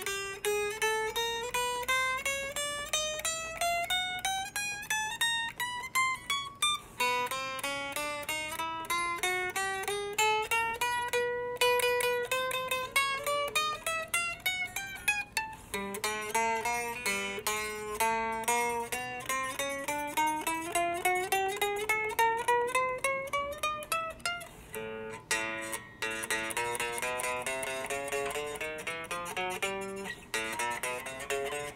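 Short-scale electric guitar played one string at a time, single plucked notes stepping up fret by fret, about three a second, in several climbing runs. This is a setup check for fret buzz, which she then reports in the middle of the neck on the lower strings: a sign the strings sit too close, from a truss rod that is too straight.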